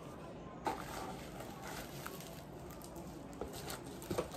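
Faint handling of a parcel's packaging as it is opened: a cardboard box and a bubble-wrap packet rustling, with small ticks and a light knock about two-thirds of a second in.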